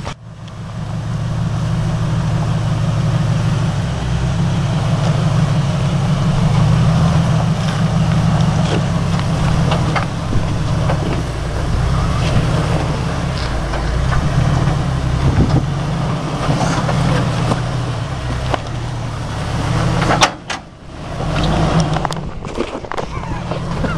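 Lifted Jeep Wrangler's engine running steadily at low revs as it crawls over boulders, with occasional knocks from the tyres and rocks.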